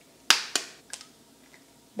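An eggshell cracking: one sharp crack about a third of a second in, then two fainter clicks as the shell is broken open to separate the white.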